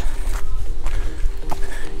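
Footsteps over rock boulders, a few short scuffs and knocks, over a steady low rumble.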